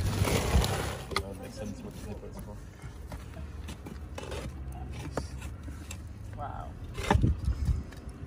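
Coals poured from a paper bag into a charcoal pit, a brief rushing rattle, then battered metal pan lids set over the pit, scraping and knocking against each other and the clay pots, with the loudest clanks near the end.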